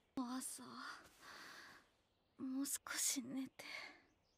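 A soft, sleepy female voice murmuring in a breathy near-whisper: two short phrases, the second about halfway in, with a breathy hiss between them.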